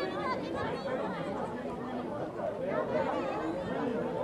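Several people talking at once, their voices overlapping so that no single voice stands out: open-air chatter on a rugby pitch during a break in play.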